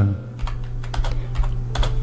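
Computer keyboard being typed on: a few scattered key clicks over a steady low hum.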